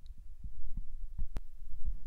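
Irregular low, muffled thumps over a rumble, with one sharp click about a second and a half in.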